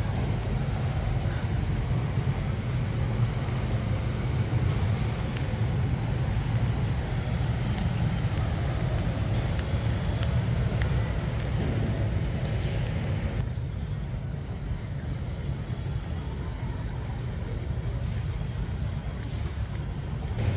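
Artificial waterfall sound played at a digital waterfall screen: a steady, low rushing rumble with no breaks, its higher hiss dropping away about two-thirds of the way through.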